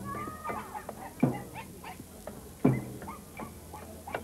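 Street-procession percussion: a deep drum struck about every second and a half, with lighter clicking strokes in between. A short high-pitched wavering call sounds near the start.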